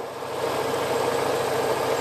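A vehicle engine idling steadily, a constant low hum with a held tone.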